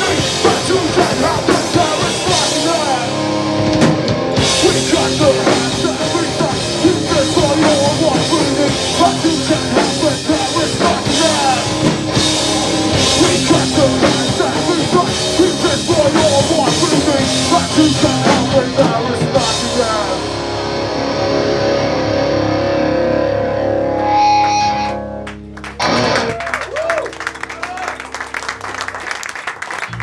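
Hardcore punk band playing live: distorted electric guitars, drum kit and shouted vocals. The song stops suddenly about 25 seconds in, leaving quieter scattered sounds.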